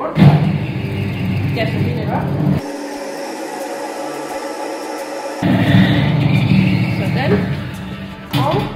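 Large commercial planetary mixer running, turning bread dough in its steel bowl: a low rumble that breaks off for a few seconds in the middle and then returns.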